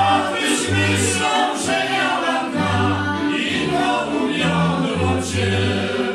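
Górale highland folk band playing two fiddles and a bowed basy (folk bass), with the bass pulsing out a steady beat and men's voices singing with the strings.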